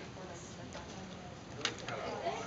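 Quiet, low murmuring voices, with two light clicks near the end.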